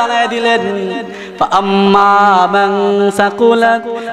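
A man's voice chanting in a slow, melodic sing-song, the tuneful delivery of a Bengali waz sermon. A brief break about a second in is followed by one long held note.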